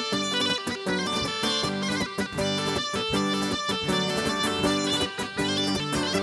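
Instrumental Cretan folk dance music with laouto lutes plucking a quick melody over an even, driving beat, and no singing.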